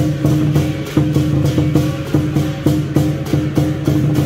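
Lion dance percussion: a large drum with clashing cymbals and gong playing a steady driving beat of about three to four strikes a second, the metal ringing on between strikes.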